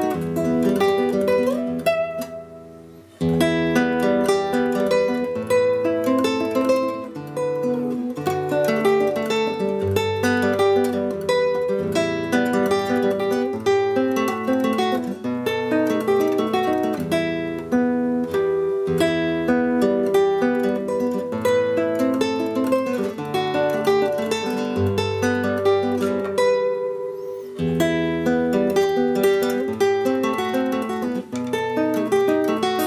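Granada classical guitar (nylon strings, solid spruce top, mahogany back and sides) played fingerstyle in a quick, continuous run of plucked notes and chords. About three seconds in, the playing pauses briefly, letting the sound die away, and then comes straight back in. There is a smaller lull near the end.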